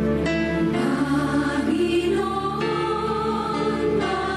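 A church choir begins singing over instrumental accompaniment about a quarter second in: a sung penitential chant in the penitential act of a Catholic Mass.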